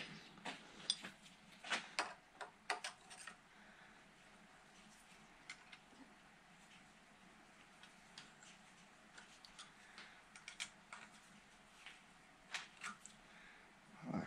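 Faint metal clicks and taps as a valve-seat grinder's pilot shaft is fitted into the engine's cylinder head and tightened, several in the first few seconds and then only sparse ticks.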